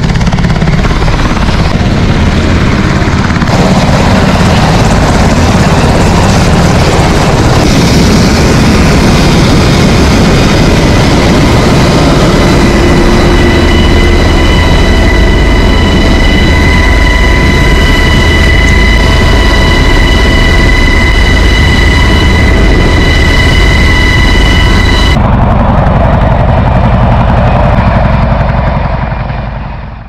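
Military helicopter at close range: loud rotor wash and engine noise buffeting the microphone, with a steady high turbine whine from about twelve seconds in. The sound changes abruptly about 25 seconds in and fades out at the very end.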